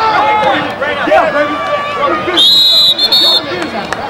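Referee's whistle blown twice, a longer blast then a short one, about two and a half seconds in, over crowd chatter.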